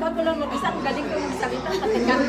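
Overlapping chatter of several women talking at once in a room.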